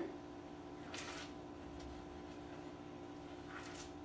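Quiet background: a steady low hum, with two faint soft swishes about a second in and just before the end.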